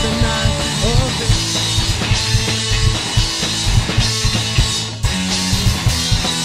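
A punk rock trio playing loud and live: electric guitar, bass guitar and drum kit, with no singing. About five seconds in the music drops out for a moment, then the band comes straight back in.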